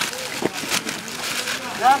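Rustling and crinkling of army backpacks and kit being handled and opened, in a few short noisy bursts; a man's voice comes in near the end.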